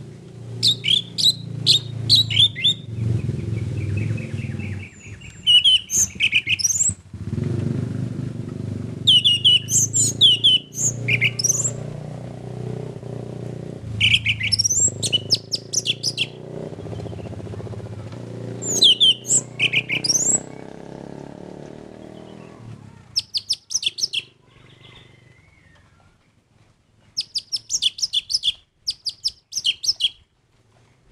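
Orange-headed thrush singing: repeated phrases of fast, sweeping whistled notes every few seconds. A steady low rumble runs beneath the song and stops about 23 seconds in.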